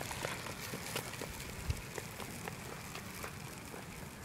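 Faint, irregular light footsteps on an asphalt road, with a low steady rumble underneath.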